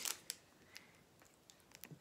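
A few faint, sparse clicks and light rustles from the crumpled foil chip packet being handled.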